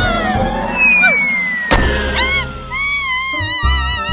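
Cartoon background music with comic sound effects: a long falling whistle-like tone and a sudden bang a little before halfway through.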